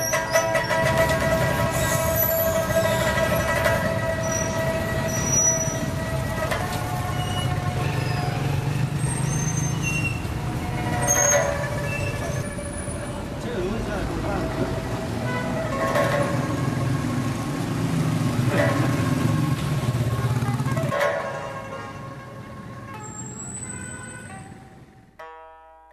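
Street noise in a narrow lane: a motor vehicle running low and steady, with people's voices and a held pitched tone through the first several seconds. The sound fades out near the end.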